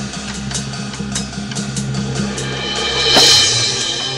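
High school marching band and front ensemble playing: sustained low notes over regular drum strikes, with a loud crash about three seconds in.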